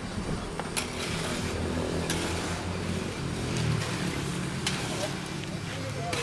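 Building-site noise: a motor runs steadily with a low hum, while a few sharp knocks ring out as cement render is levelled on a wall.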